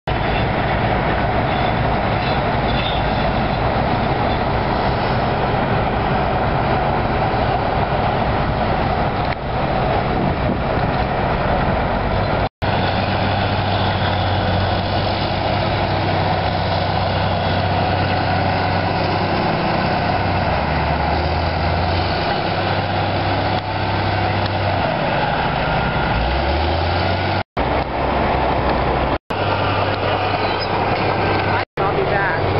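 Heavy diesel engines of sideboom tractors running steadily, their pitch shifting now and then as they rev. The sound drops out for an instant three times.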